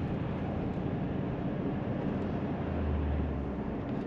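Steady road and engine noise heard inside the cabin of a moving car, with a low hum that swells for about a second near the end.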